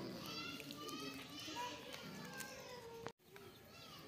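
Children's voices talking and playing, with a sudden break to silence about three seconds in.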